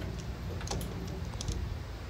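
A few faint, light clicks and taps from hands handling the wiring and tubing inside a laser cutter's cabinet, over a low steady background noise.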